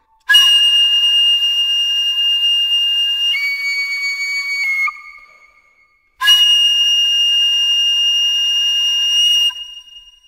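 Unaccompanied flute playing long, breathy, high held notes. The first note is held about three seconds, steps down to a lower note and fades away near the halfway point. After about a second of silence, a second long high note sounds and breaks off shortly before the end.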